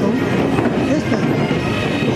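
Procession band music, steady held pipe-like tones over drumming, mixed with crowd voices and street noise.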